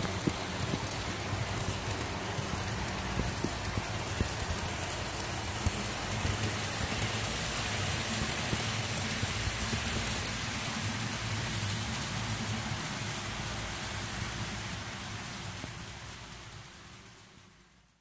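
Model train running on the layout's track: a steady rolling rattle with a low motor hum and scattered small clicks, fading out over the last few seconds.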